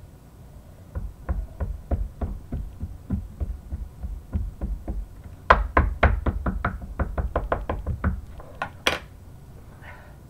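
Wood-mounted rubber stamp and ink pad tapped together again and again to ink the stamp: a fast run of sharp knocks, about four a second, louder in the second half. One sharper click follows near the end.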